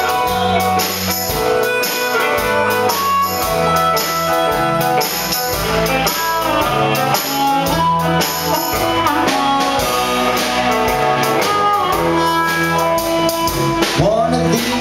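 Live rock band playing: electric guitar and bass guitar over a drum kit keeping a steady beat.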